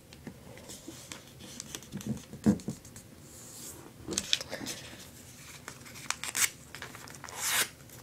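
Sheet of origami paper being folded in half and smoothed flat by hand on a tabletop, with several short papery rubbing swishes as fingers press and slide along the fold.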